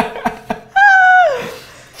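Laughter tailing off, then a loud high-pitched vocal squeal about three-quarters of a second in, held briefly before sliding down in pitch and fading.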